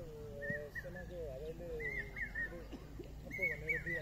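Birds calling with short, repeated arching chirps, over overlapping distant voices and a low background rumble.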